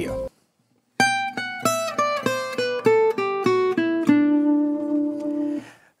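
Gypsy jazz acoustic guitar picking a fast descending line of about eleven single notes in G major, starting about a second in. It runs from G at the 15th fret of the high E string down to D at the 7th fret of the G string, and the final D is left ringing.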